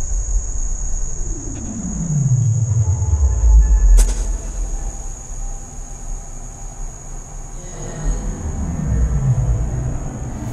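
Glitch and illbient noise music played by a Pure Data patch: a steady high whine over a low rumble, with a deep falling pitch sweep in the first few seconds, a sharp click about four seconds in, and another falling sweep near the end. The randomly picked samples are run through reverb and delay.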